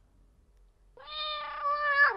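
A cat's single long meow, starting about a second in.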